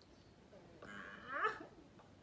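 A short, faint whimper rising in pitch about a second in, from a woman drinking a disgusting mixed concoction.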